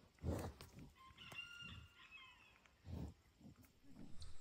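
A rooster crowing faintly, one crow of about a second. Short, low puffs of breath close to the microphone come near the start and again about three seconds in, from a bison with its nose at the camera.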